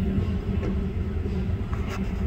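Steady low roar of a glass hot shop's gas-fired glory hole and furnace burners, with a faint click near the end.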